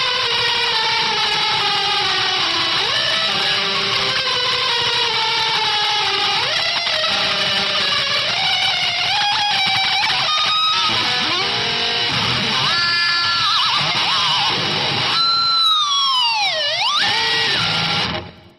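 Electric guitar holding a long sustained note that slides slowly down in pitch, then moves into short bends. Near the end it dives steeply in pitch and swoops back up, and the sound cuts off soon after.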